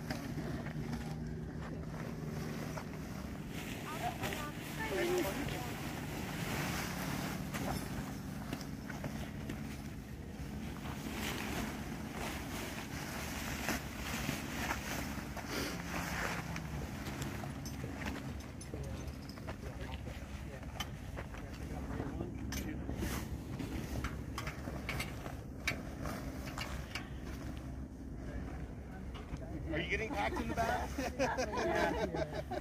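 Nylon hot air balloon envelope fabric rustling and swishing as it is pushed by hand into its storage bag, over a low steady hum and faint voices.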